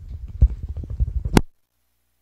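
Low rumbling thumps and rustling close to the microphone, typical of handling or brushing against it, ending in a sharp click about one and a half seconds in, after which the sound cuts to silence.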